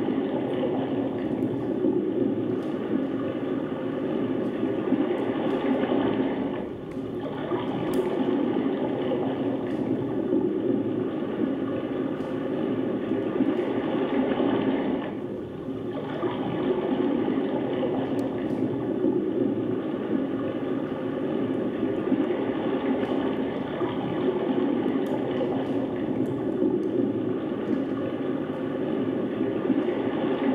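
Recorded sound of ocean surf played over the theatre sound system: a steady rush of waves that swells and ebbs, dipping briefly about seven seconds in and again about fifteen seconds in.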